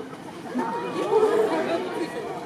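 Several people's voices talking at once, crowd chatter, with louder voices about a second in.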